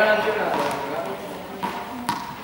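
Indistinct voices in a large, echoing sports hall, with a sharp knock near the end as a juggling ball drops to the floor.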